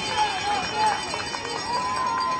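Indistinct voices talking over an outdoor background; no clear words can be made out.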